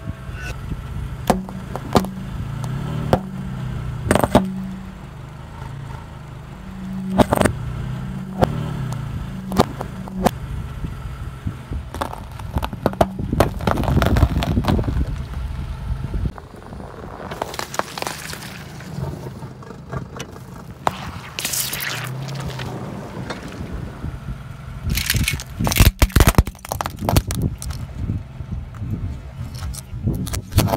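A car's tyre rolling over and crushing a series of objects, aluminium soda cans among them, with sharp cracks, crunches and scraping. The car's engine hums low underneath, plainest in the first half.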